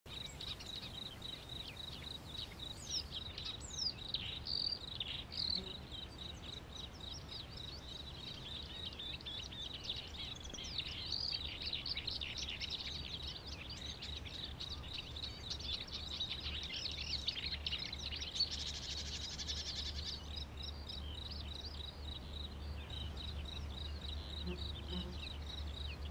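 Small birds chirping and twittering, many short calls, with a steady high whine and a low hum underneath.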